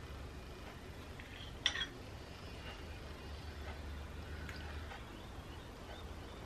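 Quiet room tone with a faint low hum, broken by one short click about a second and a half in.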